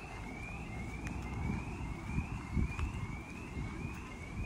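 A bird repeating a short rising whistle about twice a second, over a low rumbling background noise.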